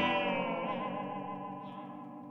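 Electric guitar chord played through a Maize Instruments delay pedal into a valve amp, ringing out and fading steadily with a slightly wavering pitch in its upper notes.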